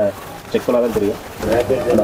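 A man talking in short phrases; speech only, with no other sound standing out.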